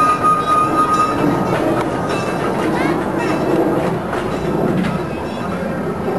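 Small heritage railroad train running on the track, a continuous rolling rumble with a steady high-pitched squeal that stops about a second in.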